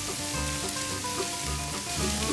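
Bok choy, napa cabbage, daikon and long beans sizzling steadily in hot peanut oil in an electric wok while being stirred with a wooden spoon.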